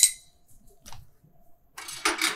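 A steel chisel set down on a steel anvil: one sharp metallic clink that rings briefly. A few faint handling sounds follow, then a duller clatter near the end.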